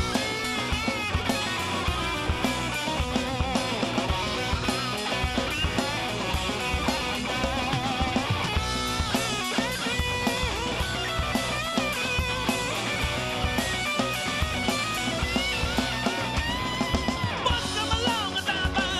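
Rock band playing an instrumental break between verses: electric guitar with bending notes over drums, at a steady level throughout.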